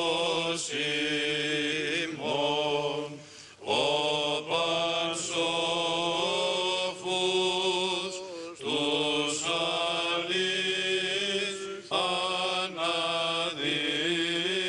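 Greek Orthodox Byzantine chant in Greek: a melodic line of long held and gliding notes sung over a steady low held drone (ison). There are two short breaks for breath, about three and a half seconds in and again past eight seconds.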